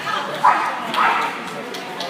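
A dog barking twice, about half a second apart, over people chattering.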